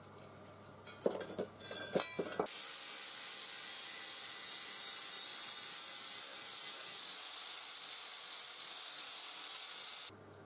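A few sharp metal clanks as the cut halves of a steel gas bottle are handled, then from about two and a half seconds in an angle grinder's abrasive disc grinding steadily against the bottle's steel shell, stripping the paint to bare metal.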